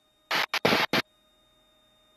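A headset boom microphone scratching and rubbing as it comes loose during a high-G pull, heard over the aircraft intercom as four short scratchy bursts in the first second, then nothing.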